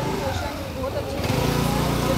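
Motor scooter engine running, growing louder from about a second in as it approaches.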